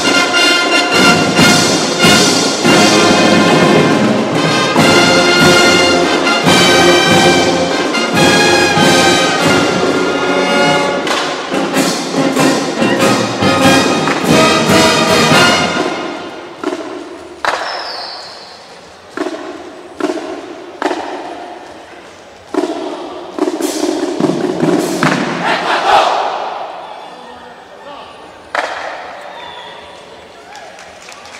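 Marching band of brass (trumpets, trombones, sousaphones) and drums playing loudly together. About 16 seconds in, the full sound breaks into a series of separate short accented chords and drum hits with gaps between, each ringing on in the hall, as the piece closes.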